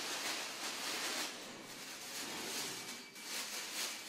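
Plastic carrier bag rustling and crinkling in irregular spells as clothes are handled in and out of it.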